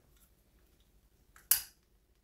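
Long-nosed butane utility lighter sparked once, a single sharp click about one and a half seconds in that trails off briefly as the flame lights.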